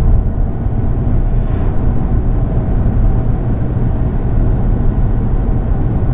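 Steady low rumble of a Volkswagen MK7 GTI driving at road speed, heard from inside the cabin: engine and road noise.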